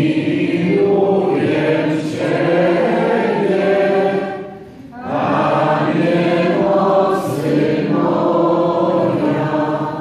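Church congregation singing together, with women's voices to the fore, in two slow phrases and a breath pause about halfway through.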